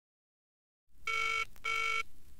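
Telephone ringing in two short bursts close together, the British double-ring pattern, at the very start of the track. A low hum and record surface hiss come in just before the ring.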